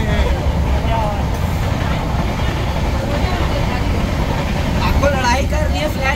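Steady low rumble of a moving vehicle heard from inside its cabin, with people's voices talking over it, more clearly near the end.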